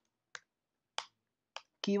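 Three keystrokes on a computer keyboard, about half a second apart; a man's voice starts talking right at the end.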